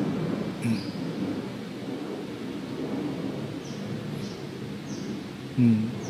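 Steady outdoor background noise during a pause in speech, with several short, faint, high-pitched bird chirps scattered through it.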